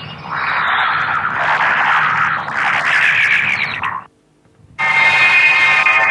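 Worn, distorted soundtrack of an old film print: a dense, harsh passage that cuts off about four seconds in, a moment of silence, then music on a steady held chord.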